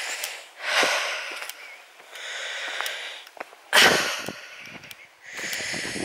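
A man breathing hard close to the microphone while walking a steep hillside path, a run of noisy breaths in and out about a second or so apart, the loudest breath about four seconds in.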